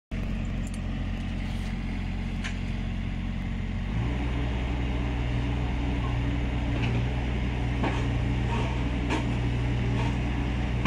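Kubota U25-3 mini excavator's diesel engine running steadily. About four seconds in it steps up to a higher, louder speed and holds there, with a few light clicks.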